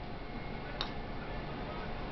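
A putter striking a golf ball once, a short faint click a little under a second in, over low steady room hiss.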